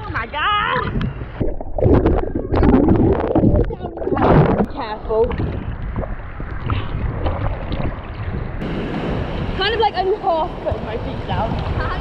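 Choppy sea water sloshing and splashing around an action camera held at the surface by a swimmer, with wind buffeting the microphone; the roughest surges come in the first half. Voices call out now and then.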